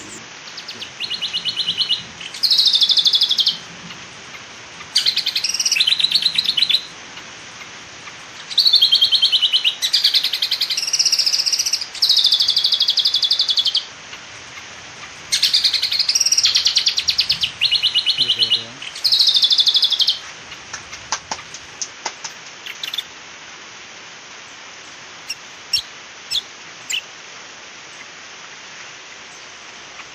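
A bird singing a series of rapid, high trilled phrases, each one to two seconds long, with short pauses between them, for about the first twenty seconds; a few faint clicks follow.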